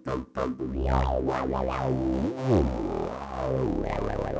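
A voice put through the Roland AIRA VT-3 vocal transformer's bass effect comes out as a deep synth-bass tone in a dubstep style. There is a quick swoop up and back down a little past the middle.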